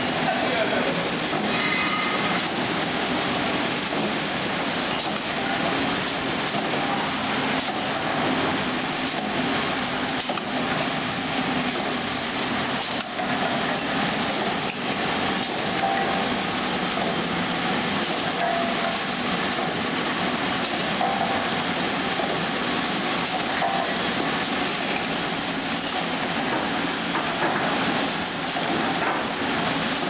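Automatic bottle-lid pad printing machine running: a steady, dense mechanical clatter of its moving parts with faint knocks.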